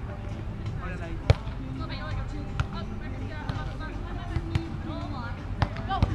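Volleyball being hit by hand in a beach volleyball rally: one sharp slap about a second in, the loudest sound, then a few fainter hits, with players' voices calling in the background.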